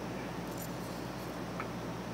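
Steady low hum and hiss of room tone, with no distinct knife or cutting sound standing out.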